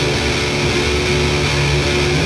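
Electric guitar chords strummed on a Squier Jazzmaster fitted with Fender CuNiFe Wide Range Humbucker pickups, played through the rhythm-circuit setting. The chord changes about halfway through.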